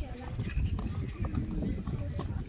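Hoofbeats of a horse cantering on the sand footing of a show-jumping arena, with voices in the background.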